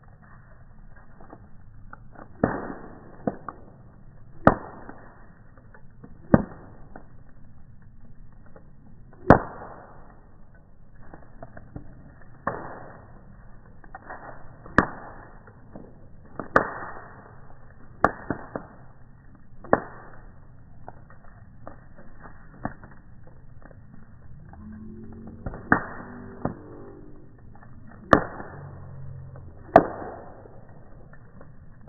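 Wood bonfire crackling, heard slowed down and deep in pitch: about a dozen sharp pops at irregular gaps of one to three seconds over a low, steady rumble of burning.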